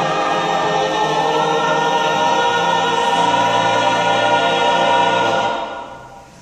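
Mixed choir singing a sustained chord, which dies away near the end.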